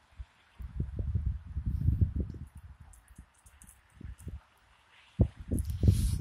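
Wind buffeting a phone's microphone: irregular low rumbling gusts through the first half and again near the end, with a quiet stretch between.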